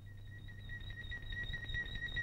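A single high held note with a rapid flutter, slowly growing louder, in the film's background score.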